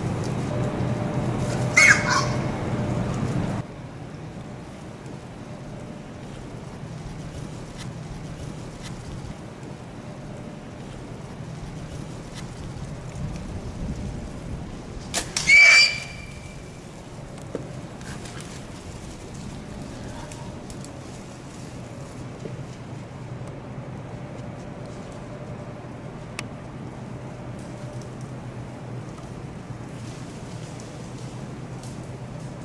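Feral hogs squealing: a short squeal about two seconds in and a louder, sharper squeal near the middle, over a steady low hum.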